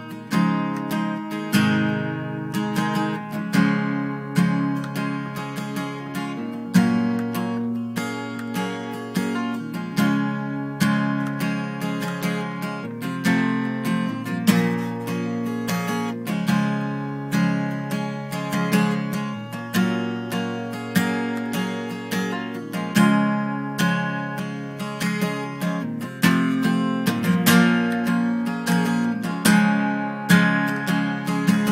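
Acoustic guitar playing a repeating riff, with notes plucked in a steady rhythm and the phrase coming round every few seconds.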